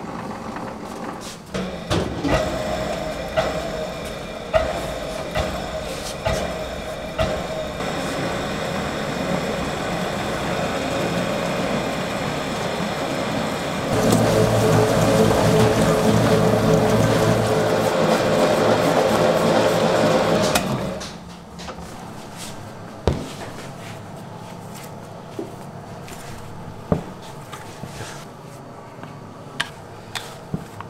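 Commercial planetary dough mixer running steadily, its hook kneading sticky rice dough in a steel bowl. It gets louder about halfway through and cuts off about two-thirds of the way in, followed by scattered knocks and clatter.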